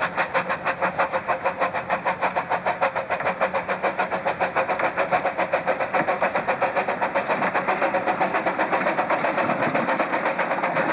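Small saddle-tank steam locomotive working a train, its exhaust chuffing in a quick, even rhythm of about five beats a second. It grows louder and fuller as it draws near.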